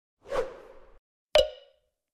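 Two edited-in sound effects for an animated title card: a whoosh about a quarter second in, then a short, sharp pop with a brief ringing tone about a second and a half in.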